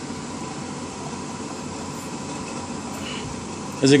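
Steady background hum with a faint high tone running through it, and no distinct clicks. A man's voice starts right at the end.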